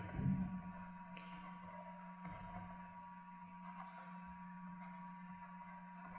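Faint steady electrical hum with a thin higher tone above it: the background noise of the recording setup between spoken phrases.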